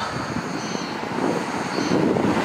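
Steady rushing roar of a distant engine, with a faint high whine twice.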